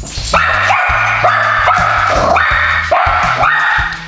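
A dog barking loudly and rapidly, about seven high barks in quick succession.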